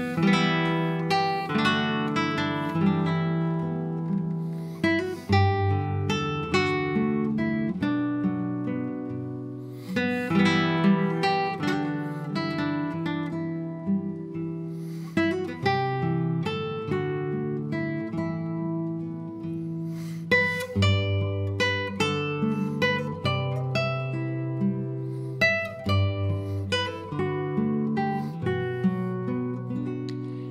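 Solo classical guitar playing an instrumental passage: fingerpicked melody notes over held bass notes, with a few fuller chords.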